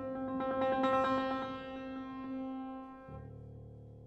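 Steinway grand piano played solo in contemporary classical style: a rapid flurry of repeated high notes over a held middle note, giving way about three seconds in to a lower sustained chord that slowly fades.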